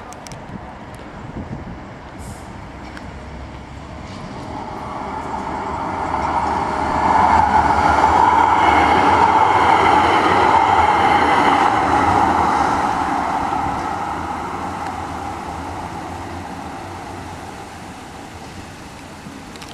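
A Supertram Siemens-Duewag articulated tram passes close by. Its running noise grows over a few seconds, is loudest as it goes past, and then fades away.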